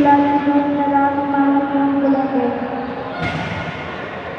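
A long, held shout from a pencak silat fighter, about three seconds, dipping slightly in pitch before it fades. A sharp thud comes about three seconds in, as the shout ends.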